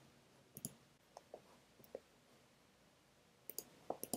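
Near silence with a few faint, scattered clicks, most of them in the first two seconds and a pair near the end.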